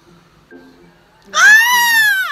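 A person's high-pitched squeal of excitement: one loud drawn-out shriek that rises and then falls in pitch, starting past the middle and lasting about a second.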